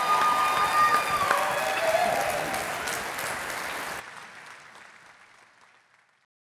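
Large theatre audience applauding at the end of a talk. The clapping drops abruptly about four seconds in and fades away to nothing.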